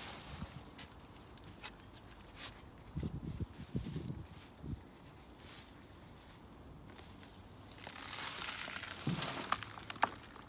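Soil and plants being worked by hand while digging Chinese artichoke tubers out of a raised bed: irregular crunching, rustling and soft thuds, busiest a few seconds in and again near the end.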